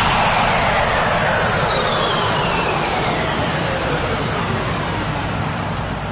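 Closing effect of an electronic dance remix after the beat stops: a whooshing, jet-like noise sweep with several pitches gliding slowly downward, gradually fading away.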